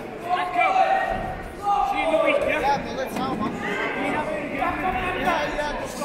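Voices calling out loudly over crowd chatter in a large, echoing hall.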